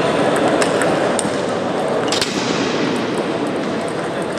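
Table tennis ball clicking off bats and table in a short rally: several sharp, irregular hits, the loudest about two seconds in, over the steady background din of a large sports hall with other matches going on.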